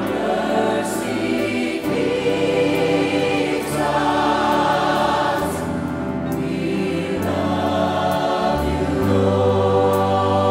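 A large robed church choir and a praise team singing a worship song together with musical accompaniment, the sung notes held and moving continuously over a steady bass.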